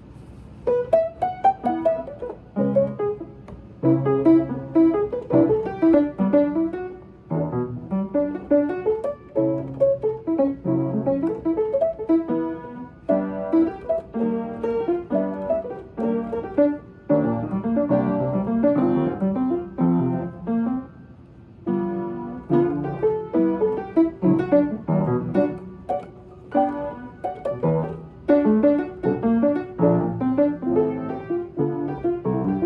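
An old upright piano played by hand: chords and melody in flowing phrases with a few brief lulls. The playing starts about a second in.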